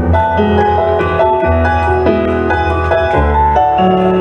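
Yamaha CP digital stage piano played through a PA system: a steady run of chords and melody notes over a sustained low bass line.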